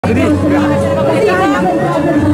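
Several women talking at once, their voices overlapping in conversation.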